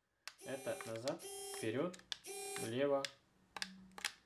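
Tiny electric motors of a toy remote-controlled mini submarine, run in air on a table, whirring in several short bursts as the transmitter levers are worked, their pitch rising as they spin up, with a steady hum near the end.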